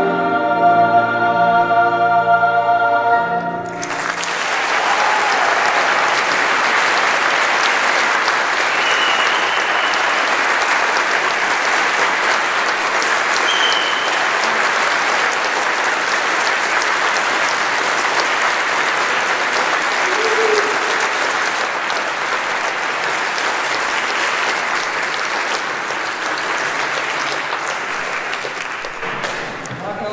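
A youth choir holds a final sustained chord that cuts off about three and a half seconds in, followed by steady audience applause.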